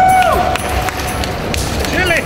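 Pool water splashing and sloshing around a person standing up in a dry suit, over the din of a large exhibition hall. A high, held call rises and falls at the start, and short falling chirps come at the end.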